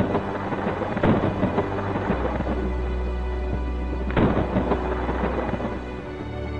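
Thunder and falling rain over slow background music with long held low notes. Thunderclaps crack out about a second in and again a little after four seconds.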